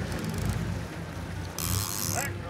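Sportfishing boat's engine running low and steady, with water rushing along the hull. A short burst of hiss comes about one and a half seconds in.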